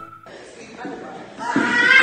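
A whistled tune over music cuts off at the start. After about a second of low room noise, a high-pitched voice begins about one and a half seconds in.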